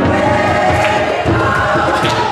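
A large group of mixed amateur voices singing a song together in harmony, with a sharp percussive beat a little under a second in.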